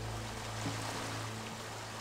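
Soft background music holding a sustained low note, over a steady hiss of flowing stream water.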